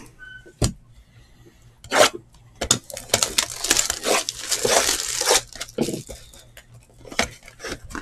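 Clear plastic shrink-wrap being torn and peeled off a cardboard trading-card box, crinkling steadily through the middle few seconds. A few sharp knocks and clicks come before and after as the box is handled.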